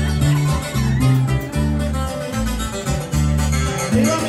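Live norteño band playing an instrumental passage between sung lines: a prominent electric bass line under strummed and plucked guitars.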